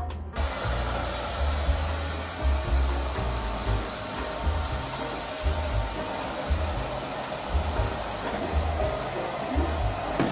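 A hair dryer running steadily, switched on abruptly just after the start, with a faint high whine in its rush of air. Background music plays beneath it.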